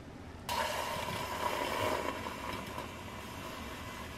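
Handheld electric milk frother running in milk in a stainless steel pitcher: a steady whir with a frothing hiss that starts suddenly about half a second in.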